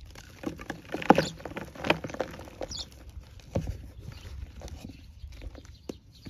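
Hands pressing into and crushing a moulded block of gym chalk, which crunches and crumbles into loose chalk powder. Close-up crackling and soft rustling, loudest about a second in and again near two seconds.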